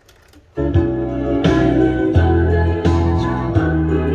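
A cassette tape playing music through a Sony CFD-700 boombox's speakers, starting about half a second in: sustained keyboard chords over a deep bass line, with a beat about every three quarters of a second.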